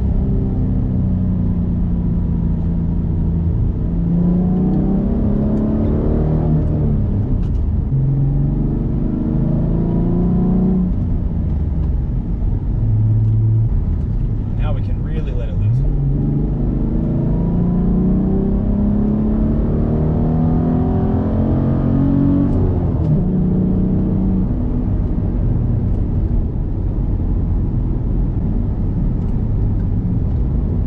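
Inside the cabin, a 2006 Ford Mustang's 4.0-litre V6, fitted with a cold air intake, headers and a Magnaflow exhaust, accelerating hard. The engine note climbs in pitch and drops back several times as it pulls through the gears, with a steadier stretch in the middle.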